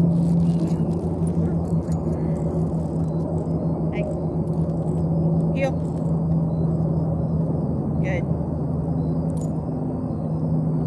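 A steady low machine hum runs throughout, with a few short high chirps over it about four, five and a half and eight seconds in.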